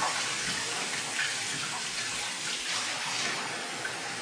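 Kitchen faucet running steadily into a sink while dishes are washed under the stream.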